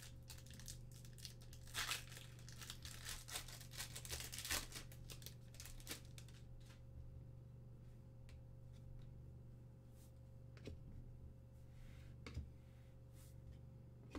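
Foil trading-card pack being torn open and its wrapper crinkled, dense crackling for the first several seconds, then fewer, lighter rustles and clicks as the cards are handled. A steady low electrical hum runs underneath.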